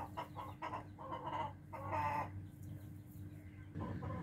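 Hens clucking softly in a few short calls, the clearest about two seconds in.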